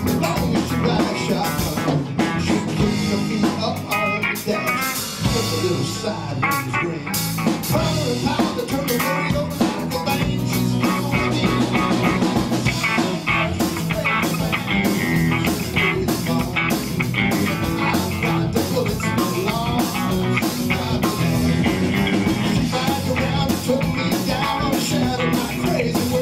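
Live band playing a funky country-blues groove, with electric guitar, bass guitar and keyboard over a drum kit's steady beat.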